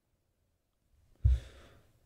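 A man's short sigh, a breath out that comes about a second in and fades within half a second, after a quiet stretch.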